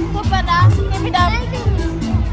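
Children's voices chattering over background music with a steady bass beat.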